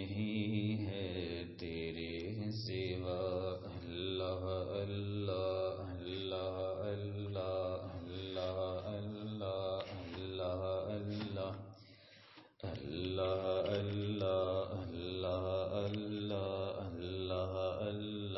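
A voice chanting an Islamic devotional invocation in short repeated melodic phrases over a steady low drone. It drops out briefly about two-thirds of the way through, then resumes.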